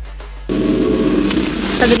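Background electronic music, joined about half a second in by a loud rushing whoosh that grows brighter towards the end: an edit transition effect. A narrator's voice starts just before the end.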